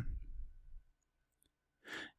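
A man's short breath intake just before he speaks again, near the end, after a second or so of near silence.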